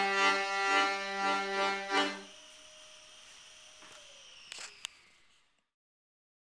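Piano accordion playing chords over a held bass note, stopping about two seconds in. A faint lingering tone and two short clicks follow before the sound cuts off.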